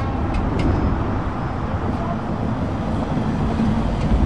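Volkswagen van driving past on a road, with steady engine and tyre noise.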